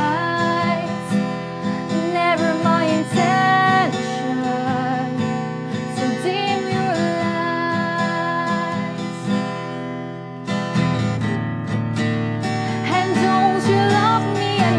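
A woman singing to her own strummed acoustic guitar. The voice drops out for a few seconds in the second half, the strumming grows fuller about ten and a half seconds in, and the singing returns near the end.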